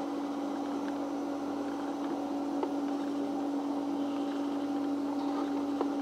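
A steady machine hum with one strong low-pitched tone over a light hiss, and a couple of faint clicks.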